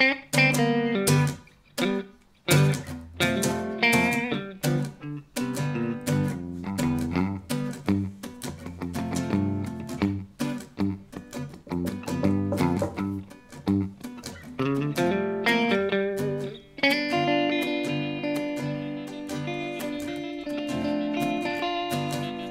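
Acoustic steel-string guitar playing an instrumental break in a reggae-rock jam: short, choppy strummed chords with sharp stops. From about 17 seconds in, chords are left to ring.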